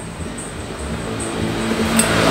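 A vehicle's engine running in the background, steadily growing louder through the second half, as if approaching, with a light tick at the very end.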